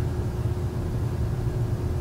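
A steady low rumble with a faint constant hum, unchanging throughout.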